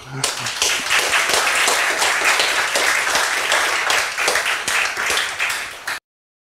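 Audience applauding, a dense patter of many hands clapping that cuts off abruptly near the end.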